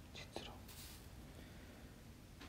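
Near silence with a low room hum, broken in the first second by a few faint, short whispered sounds.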